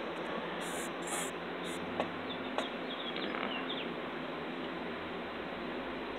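Steady background hiss of ambient noise, with two faint clicks about two seconds in and a few faint high chirps just after.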